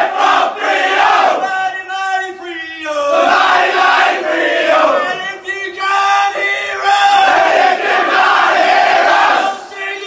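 A group of men chanting and shouting together in unison, a crowd chant sung in loud drawn-out phrases.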